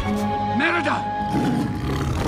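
Film soundtrack: a bear roaring and growling over background music, with a short loud burst of roaring about half a second in.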